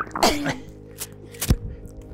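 A short, breathy grunt of effort from someone doing sit-ups, then a single knock about a second and a half in, over faint background music.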